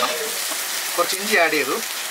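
Steady sizzle of a steaming pot of tapioca pieces and masala cooking over heat, with a short voice about a second in.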